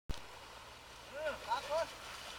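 A few short, high-pitched voice calls starting about a second in, over a steady outdoor hiss.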